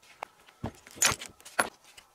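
Rough stones knocking and clinking against each other as they are handled: a few sharp clacks, the loudest about a second in.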